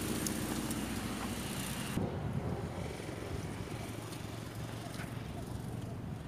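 Kick scooter's small wheels rolling on an asphalt path, a steady rumble. Its hiss drops away about two seconds in and a quieter rumble goes on.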